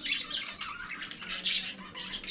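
Caged budgerigars chattering and chirping, several birds calling over one another, with a louder burst of calls about a second and a half in.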